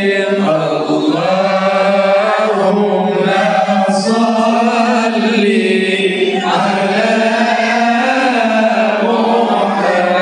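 Sholawat (Arabic devotional praise of the Prophet) being chanted, with voices holding long notes that bend slowly up and down.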